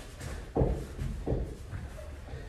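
Two dull thuds about three-quarters of a second apart, from kickboxing pad work in a ring.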